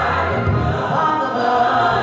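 Gospel choir music: a choir singing over a steady low accompaniment, swelling in loudness just as it begins.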